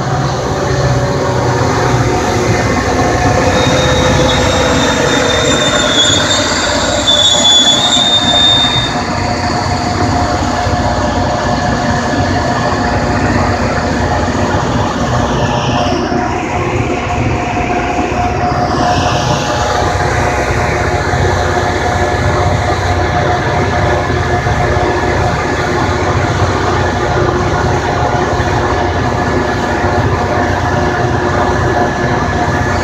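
Metra commuter train with a diesel locomotive and bilevel coaches passing close at speed, a steady loud rumble and clatter of wheels on rail throughout. Short high wheel squeals come through between about 3 and 9 seconds in, the loudest part of the pass.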